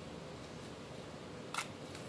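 One short click of a plastic spoon against a steel bowl while scooping gram flour, about a second and a half in, over faint steady background noise.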